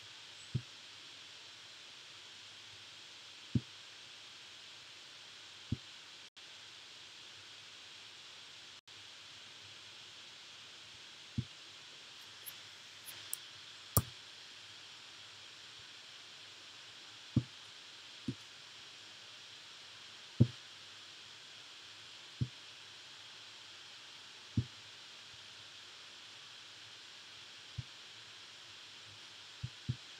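About a dozen dull, irregularly spaced clicks of a computer mouse and keyboard, one every few seconds, over a steady faint microphone hiss.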